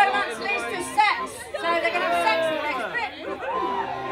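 Several voices talking over one another in a hall, chatter with no clear words.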